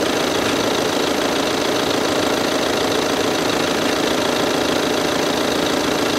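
An engine idling: a steady, unchanging mechanical drone.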